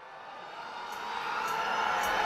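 Concert sound swelling up from silence: a rising wash of noise with faint ticks about every half second, building toward the opening of the stage music.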